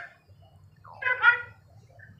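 A short burst of a person's laughter about a second in, with a faint low hum around it.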